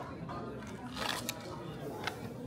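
Paper coffee bag crinkling and rustling in a short burst about a second in, as it is lifted out of a display, over a steady background murmur of voices.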